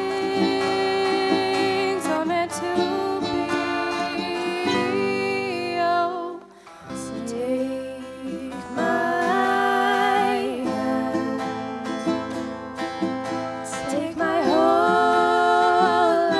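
Live acoustic song: acoustic guitars and a ukulele with a woman singing. The music drops away briefly about six and a half seconds in, then comes back.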